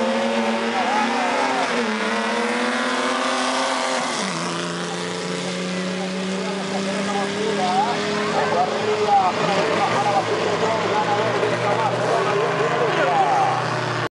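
Drag-racing car engines running at full throttle down the strip, one of them a Ford Falcon pickup ("Falconeta"). The pitch climbs and drops sharply at each gear change, about two and four seconds in, then settles into a steady drone as the cars pull away. Crowd voices run underneath.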